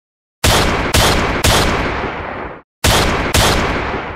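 Five loud sharp bangs, each ringing out after the hit: three about half a second apart starting about half a second in, a brief cut, then two more.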